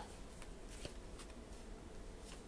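Faint handling of tarot cards: several soft, light clicks and flicks spread across two seconds.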